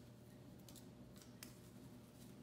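Faint crackle of iron-on transfer paper being peeled off a cotton T-shirt, a few soft ticks through the middle, the sharpest about one and a half seconds in.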